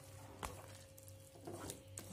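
Wooden spatula working a pan of cooked chopped greens in a non-stick kadhai, quiet overall: a single sharp knock of the spatula about half a second in, then soft scraping and squelching of the greens as stirring starts near the end.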